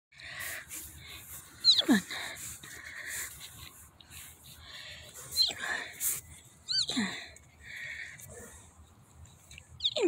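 German shepherd puppies play-biting, giving four short high yelps that slide steeply down in pitch, with softer breathy noises in between.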